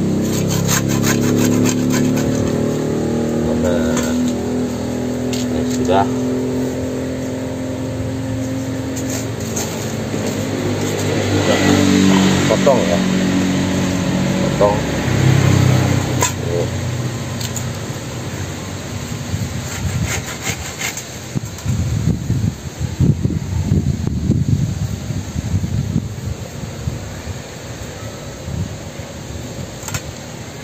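A motor vehicle engine running steadily for roughly the first half. In the second half come irregular short strokes of a machete hacking and scraping at the stump's woody roots.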